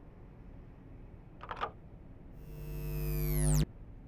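Sound effect of surveillance monitoring equipment being shut off: a short click about a second and a half in, then a buzzy electrical hum that swells for about a second and cuts off suddenly.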